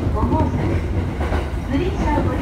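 Inside the carriage of an electric commuter train while it runs: a steady low rumble from the wheels and running gear, with people's voices talking over it.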